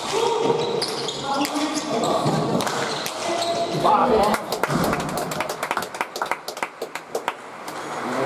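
Bare-hand pelota rally in a trinquet: sharp smacks of the ball off hands, walls and floor echoing in the hall, with voices calling. A shout about four seconds in, then several seconds of scattered handclapping as the point ends.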